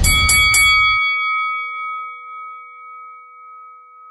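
Boxing-ring bell sound effect struck three times in quick succession, then ringing out and slowly fading. A low rumble under the strikes cuts off about a second in.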